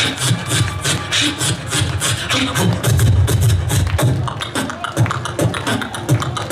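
Live beatboxing through a stage PA: rapid percussive mouth clicks and hits over a deep, continuous bass line.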